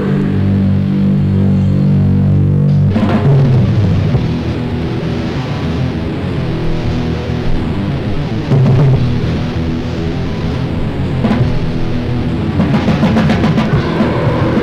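Hardcore punk recording: a distorted low chord rings out for about three seconds, then the full band crashes in with driving drums, bass and guitar.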